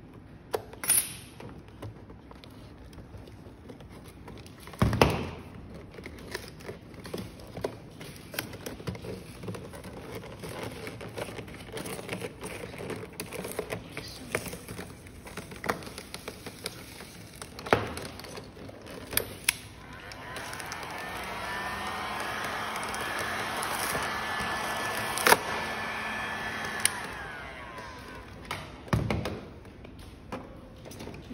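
Scattered clicks and knocks of a blade and hands working on a plastic panel. In the second half a steady whirring noise runs for about seven seconds, then stops.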